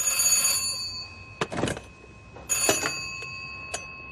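An old candlestick telephone's bell rings twice, each time a steady high metallic ring lasting about a second. A couple of faint knocks fall in the gap between the rings.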